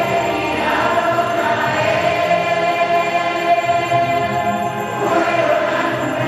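A choir singing a slow hymn in long, held notes.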